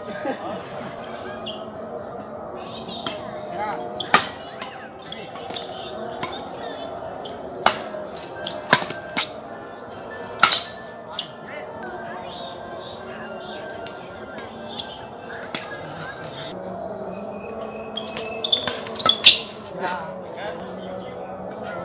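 Badminton rackets striking a shuttlecock during a doubles rally: sharp, isolated cracks a few seconds apart, with a quick cluster of hits near the end. Crickets chirp steadily in the background.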